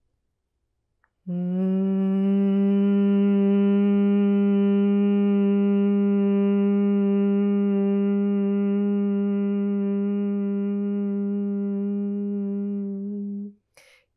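A woman humming one long, steady note on a single low pitch as she breathes out in bhramari, the humming bee breath. It starts about a second in, after a silent inhale, holds for about twelve seconds, and stops just before the end.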